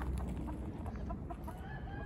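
Chickens clucking: short repeated notes, several a second, from a hen with her young chicks, then a longer drawn-out call near the end.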